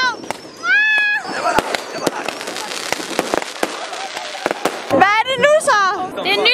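New Year's fireworks going off in many sharp, irregular cracks and bangs, most dense in the middle few seconds. Excited shouts rise over them about a second in and again near the end.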